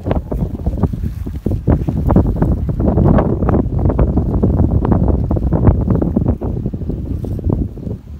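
Strong wind buffeting the microphone: a loud, gusty low rumble that eases off near the end.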